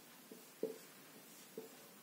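Whiteboard marker drawing arrows on a whiteboard: about three short, faint strokes of the marker tip.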